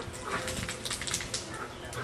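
A dog whining and yelping in short, repeated cries, with a cluster of sharp noises about halfway through.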